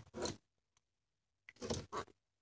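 Two short rustling noises close to the microphone, about a second and a half apart, the second one longer.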